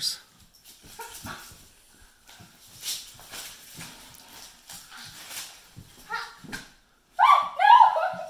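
Children wrestling: faint scuffling and soft knocks, then short high-pitched yelps about six seconds in and louder yelps near the end.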